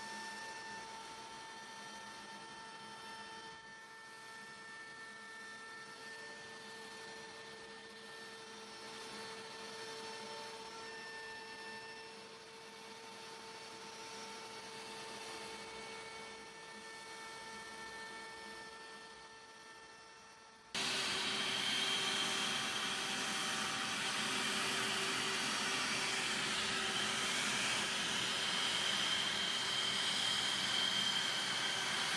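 DeWalt DWP611 compact router spinning on an X-Carve CNC machine as it carves wood, a steady whine with a few held tones. About twenty seconds in the sound jumps louder and hissier, with a different main pitch, as the router cuts again.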